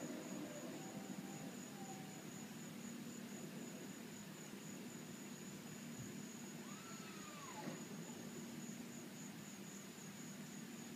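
Insects chirring outdoors in a steady, high, finely pulsing trill over a low hum. A single faint whistle rises and then falls about seven seconds in.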